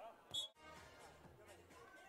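Near silence: faint background ambience, broken about a third of a second in by one brief high-pitched blip, then a sudden drop to silence before the faint background returns.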